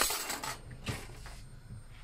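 Kitchenware being handled: a spoon and dishes clinking, with a short scrape at the start and a single sharp click just under a second in.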